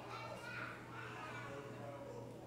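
Faint, indistinct voices and children's chatter in a large hall, with a steady low hum underneath.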